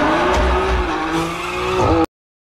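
Sports car engine held at high revs while its tyres screech in a smoky drift; the engine note climbs in pitch early on and then holds steady.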